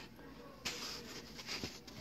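Faint handling noise of a necklace being lifted out of its gift box, with a soft rustle starting about two-thirds of a second in and a few light ticks after it.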